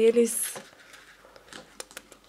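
A hummed "mm" ends in the first moment, followed by faint rustling and small scattered clicks from hands fitting a light green dress onto a small doll figure.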